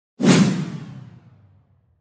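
A whoosh sound effect for a logo reveal. It starts suddenly a moment in and fades away over about a second and a half.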